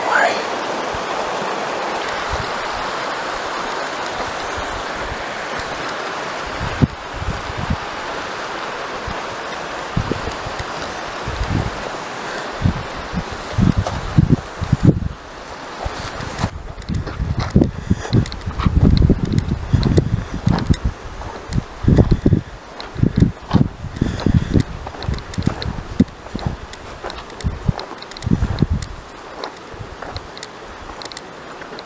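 Steady rush of a river, which drops away sharply about halfway through. Irregular low bumps and rustles follow, from footsteps through grass and scrub and a handheld camera.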